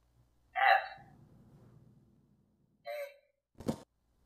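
Two brief vocal sounds from a person, about two seconds apart, then a sharp click near the end.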